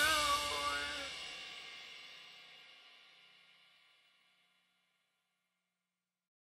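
A heavy rock band's last chord and cymbals ringing out after the song stops, with a wavering note in the first second. The sound fades to silence within about three seconds.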